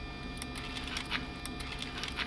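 A small electric test-rig motor turns a plastic gear and linkage that cycles the lever of a Mercedes S-class throttle actuator. It gives a low mechanical running sound with a few light irregular ticks, over a steady electrical hum.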